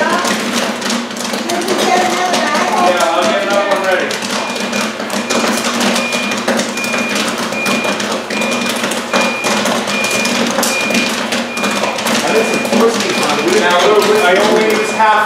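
Large commercial popcorn machine's kettle popping corn, a dense crackle of bursting kernels. From about four seconds in, the machine beeps steadily about twice a second, its signal that the batch is done and ready to dump.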